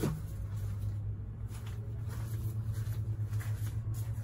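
A steady low hum, with faint rustles and light knocks of handling.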